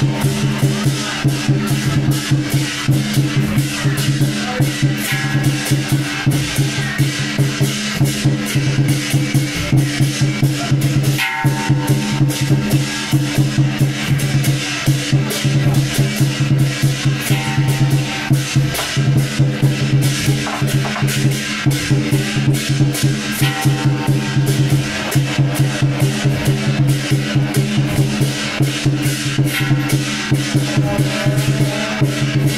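Temple-procession percussion music, mainly drums, played in a fast, even beat, with a steady low tone sounding beneath it the whole time.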